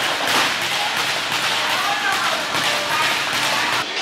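Busy weight-room din: steady noise with faint distant voices and a few light knocks of equipment. It cuts off suddenly just before the end.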